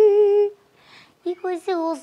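A woman wailing in a drawn-out, wavering voice that breaks off about half a second in, then picks up again in short cries that rise and fall in pitch.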